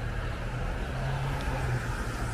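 Steady street traffic noise with the low hum of a running vehicle engine.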